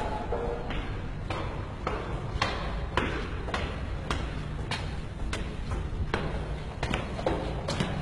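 Footsteps climbing a stairwell, steady at about two steps a second.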